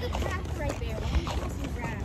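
Steady low wind rumble on a handheld phone microphone while walking, with scattered light clicks of footsteps and handling, and faint fragments of nearby talk.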